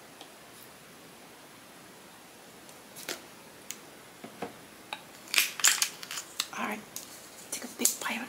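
Close-miked sharp clicks and rustles of handling: a few scattered clicks after about three seconds, then a dense burst of crisp clicks and crackles around five to six seconds, with a few more near the end. The first few seconds are a low hiss.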